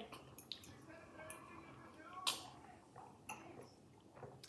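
Quiet sipping of fizzy soft drink from small glasses, with a few soft clicks, the loudest about two seconds in, and a faint murmured voice early on.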